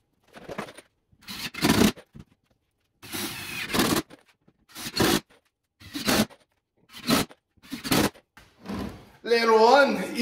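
Silicone glue brush spreading glue over OSB in short scraping strokes, roughly one a second. A man's voice starts near the end.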